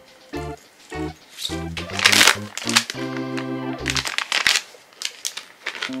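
Plastic packaging crinkling as it is handled, in two spells, the louder one about two seconds in and another near five seconds, over light background music.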